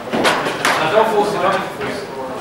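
Indistinct talking, too unclear to make out words, with a sharp knock about a quarter of a second in.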